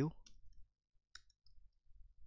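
A few faint, isolated computer keyboard key clicks from typing code, the clearest about a second in.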